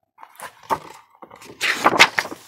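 Paper rustling and light knocks from a picture book being handled as its page is turned, with a longer rustle near the end.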